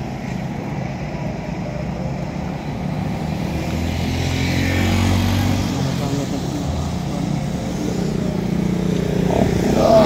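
Road noise from a moving vehicle, a steady engine hum and tyre noise on a wet road. The noise swells about four to six seconds in as a car passes close by, and rises again near the end.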